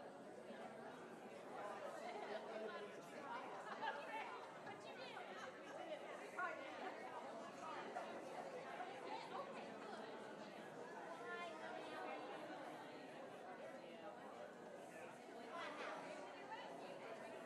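Many people chattering at once, an indistinct, fairly faint hubbub of overlapping conversation with no single voice standing out.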